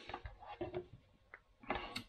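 Faint clicks and rattles of a plastic wireless security camera and its screw-on antenna being handled, a few short ticks in the first second.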